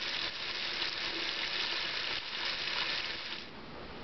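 Tap water running in a thin steady stream into a ceramic bathroom sink, splashing at the drain with an even hiss that eases slightly just before the end.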